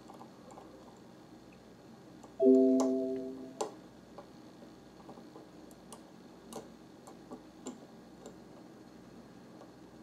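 A single electronic tone about two and a half seconds in, held for about a second and fading out, amid faint scattered clicks.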